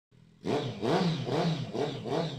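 Suzuki Bandit 650 inline-four revved in short throttle blips through a 'Dozer' aftermarket sport exhaust tip, starting about half a second in, the pitch rising and falling with each blip. The exhaust gives it a turbo-like whistling growl.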